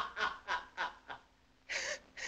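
A man laughing in short bursts that slow and die away after about a second, then a breathy burst of laughter near the end.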